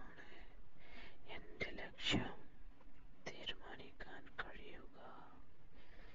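A person whispering in short phrases with brief pauses.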